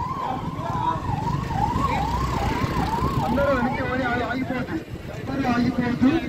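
A vehicle siren rapidly sweeping up and down, about two rises and falls a second. It stops about three seconds in, and people's voices follow.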